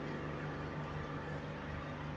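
A pause in speech: faint room tone, a steady low electrical-sounding hum under a light hiss.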